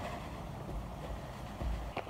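Walk-behind broadcast spreader being pushed over grass, its wheels driving the spinner that flings lime pellets: a steady, even whirring hiss with a low rumble underneath.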